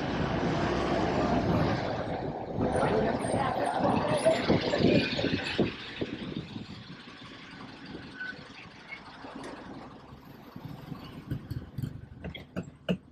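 City bus pulling up at the stop, its engine and road noise loud for about the first six seconds, then much quieter once it has stopped, with a few short clicks near the end.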